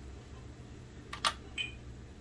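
Steady low room hum, with two small clicks a little over a second in and a faint short ping just after, from handling a plastic spoon in powder on a stainless steel tray.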